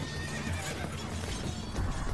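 Sound-effect horse whinnying and hooves clattering, laid over background music.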